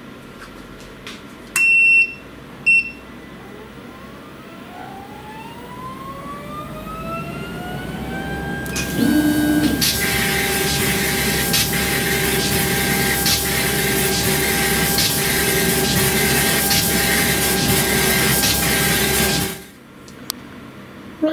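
Thunder Laser Nova 35 100 W CO2 laser engraver starting a raster engraving pass: two short beeps, then a rising whine as the machine spins up. After that comes a loud steady rush of air with a steady hum and regular ticks, as the laser head scans back and forth over the wood. It cuts off suddenly near the end.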